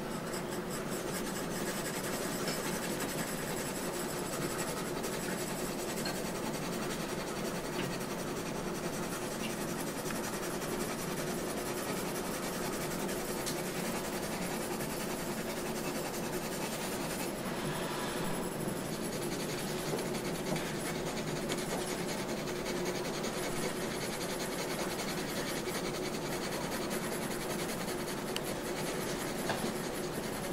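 Graphite pencil scratching across drawing paper in continuous shading strokes, with a faint steady hum underneath.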